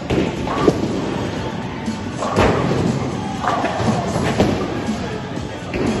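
A ten-pin bowling ball is delivered and lands on the lane with a thud about half a second in, followed by another heavy knock about two seconds later. Background music and voices fill the alley.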